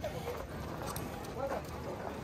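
Racehorses walking on a dirt track, a few hoof falls heard under background chatter of voices.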